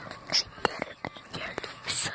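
A person whispering softly, with scattered clicks and rubbing from the camera being handled and moved.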